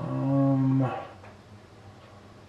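A man's voice holding a steady, unchanging hum-like filler sound, like a drawn-out "mmm", for just under a second, then quiet room tone.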